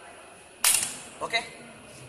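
Schmidt rebound hammer firing against a concrete column: one loud, sharp snap as the spring-driven hammer mass releases and strikes the plunger, with a short ring after. The snap is the cue to press the lock button and hold the rebound reading.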